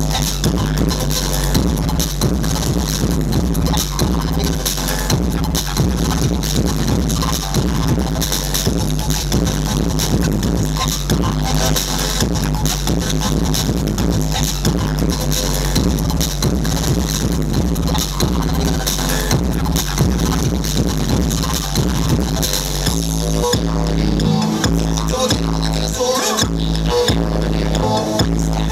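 Loud breakbeat dance music from a DJ set over a club sound system, with dense drum hits and heavy bass. About 23 seconds in, the treble drops away and the bass cuts in and out in short gaps.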